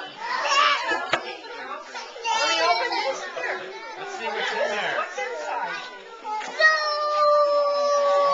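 Excited chatter of a group of young children talking over one another. Near the end one voice holds a long, steady high note.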